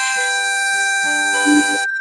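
Harmonica playing the instrumental break between verses of a folk song, a melody of held reedy notes moving one to the next.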